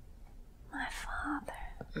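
A woman's quiet whispered reply lasting about half a second, starting partway through, followed by a couple of faint clicks.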